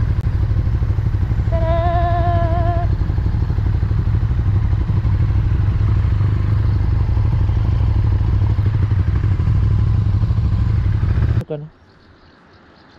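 Motorcycle riding noise: the V-twin engine of a KTM 1290 Super Duke R running at road speed, with heavy wind rumble on the microphone. It cuts off suddenly near the end.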